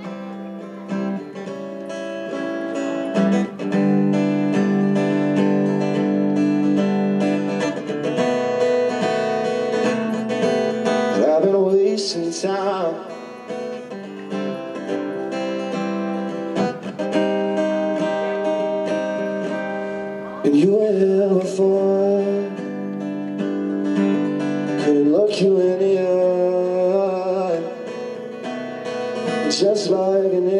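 Acoustic guitar strummed and picked steadily, with a man's voice singing a few held, wordless notes over it.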